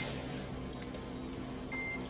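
Soft background music with sustained low notes, and a short high-pitched beep from a patient monitor near the end.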